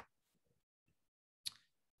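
Near silence, with one brief faint click about a second and a half in.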